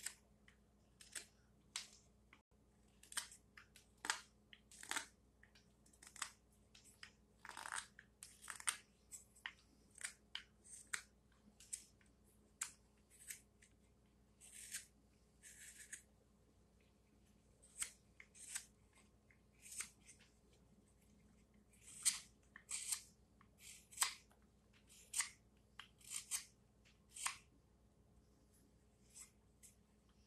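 Carving knife slicing shavings off the back of a cherry-wood ladle bowl, cut after cut, hitting the high spots to even it out: short crisp cuts, irregular, about one or two a second, with a few longer drawn cuts.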